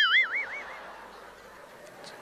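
Cartoon 'boing' sound effect: a springy pitched tone that wobbles up and down several times and fades out within the first second, leaving faint background hiss.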